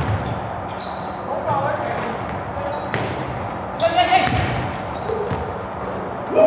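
Basketball game in a gym: the ball bouncing on the hardwood court, sneakers squeaking briefly near one second in and again around four seconds, and players' voices, all echoing in the large hall.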